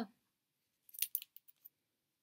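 Several short crinkles and clicks over less than a second, starting about a second in: a sticker pack in a clear plastic sleeve being handled and put down.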